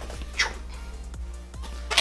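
Background music, over a cardboard shipping box being pulled open by hand: a brief scrape about half a second in and a sharp snap near the end.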